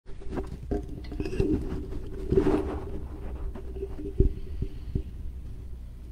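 Handling noise at a desk: scattered light clicks, taps and a brief rustle, with one sharp knock about four seconds in, over a steady low hum.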